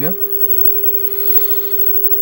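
Steady 400 Hz test tone from a signal generator, played through the Philips 14CN4417 television's speaker, with a faint hiss above it.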